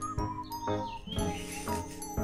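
Background music: a light, tinkling tune with a high melody line.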